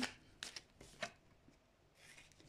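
Fortune-telling cards being handled: a few short, soft card clicks and snaps as a card is drawn from the deck and laid down.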